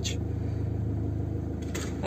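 A small car's engine idling, heard from inside the cabin as a steady low hum. The clutch is being eased out toward its biting point.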